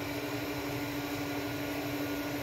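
A steady mechanical hum with one constant tone over an even hiss, as from a running appliance or fan.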